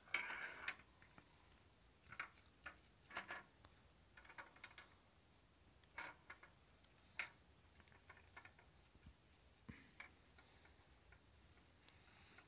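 Perplexus Rookie plastic maze sphere being turned in the hands: faint, irregular clicks and ticks as the ball rolls and knocks along the plastic track.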